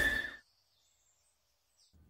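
A loud sound dies away within the first half second, leaving faint, high bird chirps over near silence.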